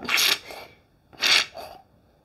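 Two pumps of a hand-pump foam dispenser squirting hair mousse into a palm, each a short hiss, about a second apart.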